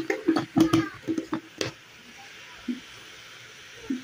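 Kitchen utensils clinking and knocking about six times in quick succession during the first second and a half, then a quiet stretch.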